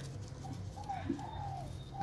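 Faint cooing of a spotted dove: a few soft, low, gliding notes.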